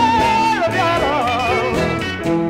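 Electric Chicago blues band recording: a high note is held steady, then shaken in a wide vibrato and bent downward about half a second in, over the band's steady low accompaniment.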